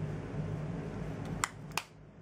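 Makeup brush brushing over the skin with a steady soft rustle. About a second and a half in the rustle stops, and two sharp clicks follow close together.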